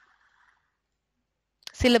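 Near silence: a faint hiss fades out in the first half second, then dead quiet, until a woman's narrating voice begins near the end.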